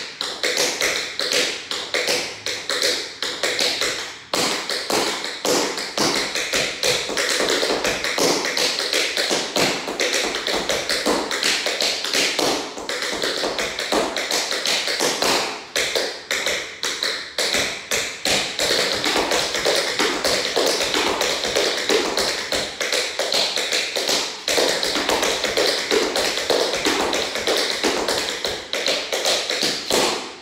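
Tap dancing on a hardwood floor: a fast, continuous run of sharp taps and shuffles from tap shoes, with a few brief breaks.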